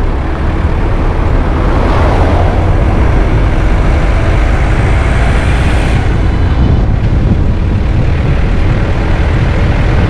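Ford Freestyle diesel car on the move: a steady low rumble of engine and road noise, with tyre hiss off a wet road surface. The higher noise swells from about two seconds in and drops away suddenly about six seconds in.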